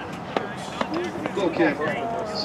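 Indistinct voices of players and spectators calling out across an open soccer pitch, with two sharp knocks in the first second.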